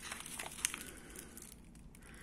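Foil coffee bag crinkling as it is grabbed and lifted, with a scatter of small crackles that are densest in the first second.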